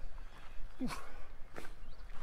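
A man's tired 'ouf' sigh, a short exhaled voice sound falling in pitch, from a hiker out of breath and sweating under a heavy backpack. A low wind rumble on the microphone runs underneath.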